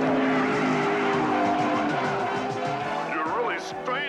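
Cartoon race-car sound effect: an engine running with tyres skidding and squealing as the car slides around a dirt oval, with wavering squeals near the end.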